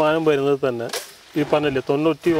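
A man talking, with a brief sharp click about halfway through.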